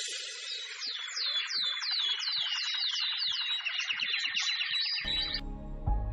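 Birdsong sound effect: a dense, high chattering chorus with a run of quick falling whistled notes, about three a second. It cuts off suddenly about five seconds in as low background music starts.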